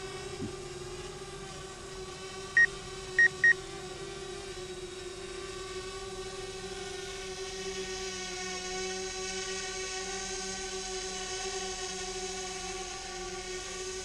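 DJI Spark drone's propellers humming steadily in flight, one held pitch with overtones above it. Three short high beeps come about two and a half to three and a half seconds in: the flight app's warning tone, which keeps sounding for radio interference.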